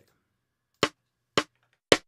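Metronome click track counting time: three sharp, even clicks a little over half a second apart, the third slightly louder.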